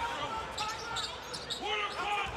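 Basketball dribbled on a hardwood court, thudding at irregular intervals, with short high squeaks of sneakers and a steady arena crowd murmur.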